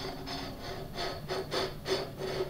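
Aluminium drink cans dragged on fishing line across a tabletop, scraping in short jerks about four times a second, over the steady hum of a motorized camera slider. The jerky scraping is the cans stuttering instead of gliding: the surface friction grabs them and the slider pulls too slowly.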